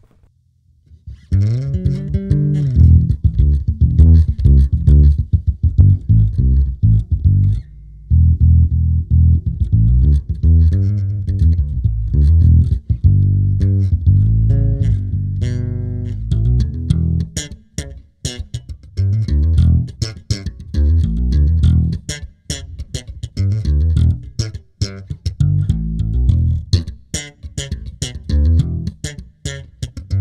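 Electric bass guitar played solo through a ToneX One amp-and-cabinet model captured from an Aguilar SGT rig, heard alone through the Zoom B6's effects-loop return with the dry signal off. A run of plucked notes starts about a second in, with a couple of brief pauses, and the note attacks turn sharper and more percussive in the second half.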